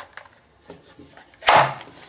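Glock 19 pistol being pushed into a Kydex holster: a few faint scrapes and small clicks, then one loud sharp click about one and a half seconds in as the pistol snaps past the holster's retention, a positive lock.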